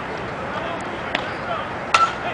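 A softball bat hitting the pitched ball: one sharp crack near the end, over a faint murmur of voices.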